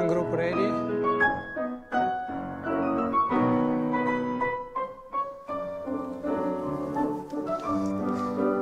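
Piano playing classical-style ballet accompaniment: a steady flow of melody and chords, with a brief dip about two seconds in and a few short breaks around five seconds in.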